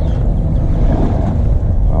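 Pontoon boat's outboard motor idling with a steady low rumble, mixed with wind on the microphone.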